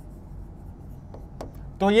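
A stylus writing on a digital touchscreen display: a faint scratching with a couple of light taps of the pen tip on the screen.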